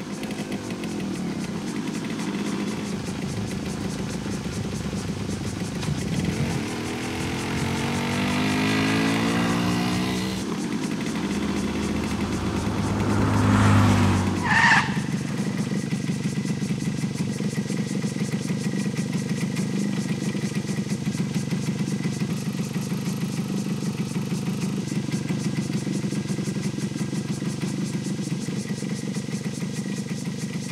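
Suzuki motorcycle engine running steadily while riding, its pitch rising as it speeds up about a third of the way through, with a louder surge near the middle before it settles back to an even drone.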